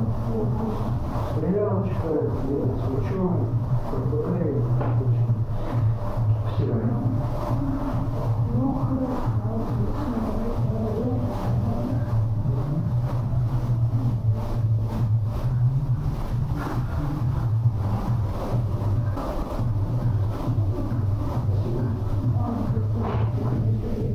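Indistinct conversation between people in a room, over a steady low hum.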